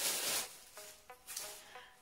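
Tissue-paper wrapping rustling and crinkling as it is handled and pulled off, loudest in the first half second and then fading, over soft background music.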